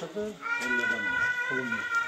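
A long, high, steady animal call beginning about half a second in and held for about two seconds, over low voices.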